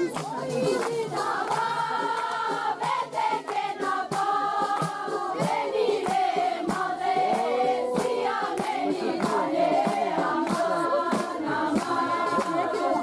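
A group of voices singing together in long, held lines: a traditional wedding song sung as the bride leaves home.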